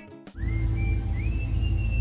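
Background music stops about a third of a second in. It gives way to the steady low rumble of a motor boat under way, with a thin high whistling tone that slides up, holds and dips a little.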